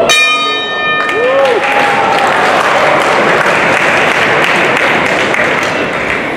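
Boxing ring bell struck once, ringing for about a second to mark the end of the round, followed by crowd applause.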